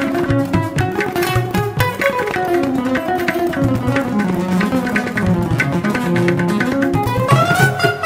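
Instrumental Indian classical-style background music: a plucked string instrument playing a gliding melody over steady tabla strokes.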